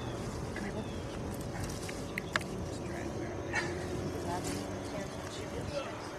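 Faint background voices over steady noise, with a few short high whines from a puppy in the second half and a couple of sharp clicks.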